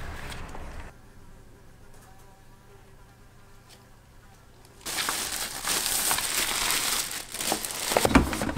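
Plastic wrapping bag being handled: low handling noise, then a quiet stretch of a few seconds, then from about five seconds in a loud crinkling rustle full of sharp crackles.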